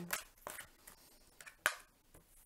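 Tarot cards being handled as a split deck is put back together: a few soft taps and card-on-card clicks, with one sharper snap about three-quarters of the way through.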